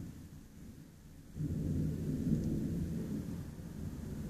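Thunder rumbling low, swelling suddenly about a second in and then slowly dying away.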